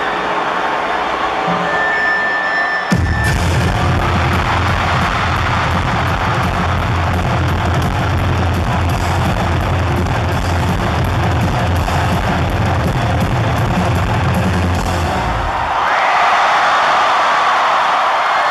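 Live rock band in an arena: after a few seconds of crowd noise the band crashes in together at full volume, with heavy bass and drums. It plays until near the end, then stops, and the crowd cheers.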